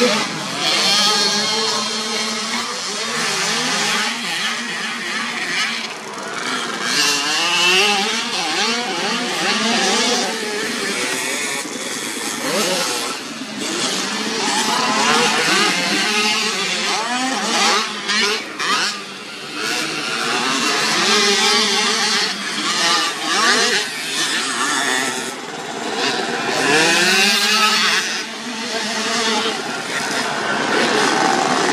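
Several small two-stroke youth motocross bikes revving hard as they pass, their engine notes repeatedly rising and falling with throttle and gear changes and overlapping one another.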